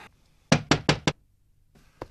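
Knocking on a wooden door: four quick raps in a row, starting about half a second in, then nothing.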